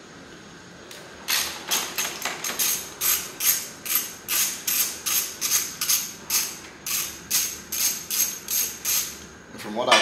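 Socket ratchet clicking in a steady, even rhythm, about three to four clicks a second, as a 13 mm bolt is backed out from under a motorcycle's tail. The clicking starts about a second in and stops shortly before the end.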